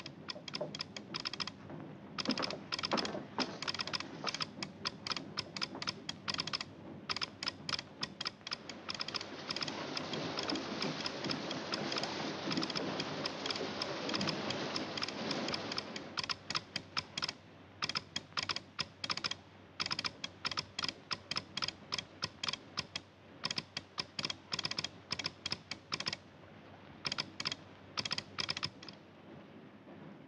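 Morse code tapped out as rapid trains of sharp clicks on a telegraph key, in irregular groups with short pauses between them. A hiss of radio static swells under the clicks for several seconds around the middle.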